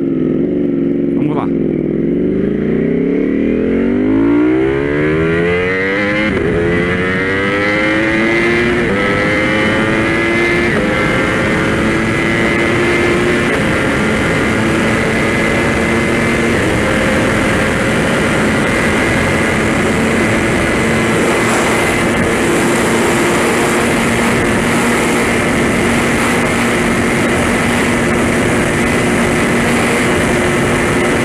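Ducati Panigale V4 S V4 engine with a full Spark exhaust accelerating hard from low speed. Its note climbs and drops back at each upshift, about five times in the first dozen seconds, with each gear lasting longer than the last. It then holds a steady high-speed note in top gear under heavy wind noise that grows as speed builds.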